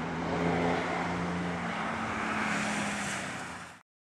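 Rally car passing at speed, its engine note dropping slightly in pitch about halfway through as tyre and wind noise build. The sound cuts off suddenly near the end.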